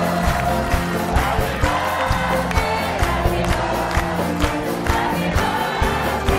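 Live band playing an upbeat song with a steady drum beat, about two beats a second, with a group of voices singing along.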